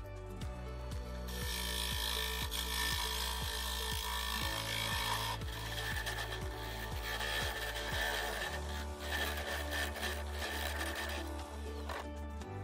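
Turning gouge cutting into a walnut bowl spinning on a wood lathe: a scraping hiss that starts about a second in and stops shortly before the end. Background music with a steady beat plays throughout.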